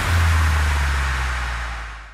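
Background music ending on a held low bass note with a hiss of noise over it, fading out toward the end.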